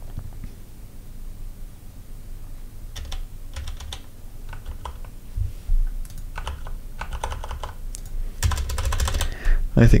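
Computer keyboard being typed on in short irregular runs of key clicks, entering a password at a login prompt, with a couple of dull low thumps among the keystrokes.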